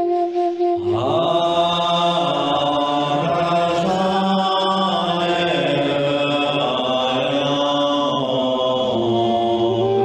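A man chanting a Tibetan mantra alone. He breaks briefly for breath just before a second in, then holds one long, slightly wavering note until about nine seconds in, when the stepping melody of the chant returns.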